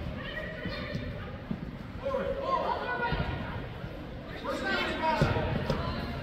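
Indistinct voices of players and spectators in a large indoor sports hall, with a low thud of a soccer ball being kicked about five seconds in.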